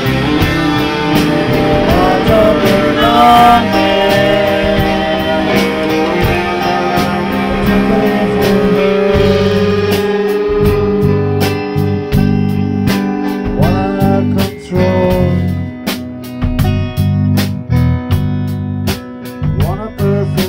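Live rock band playing: electric guitar with bent notes, over drums and bass, with some singing. The drum strikes stand out more in the second half.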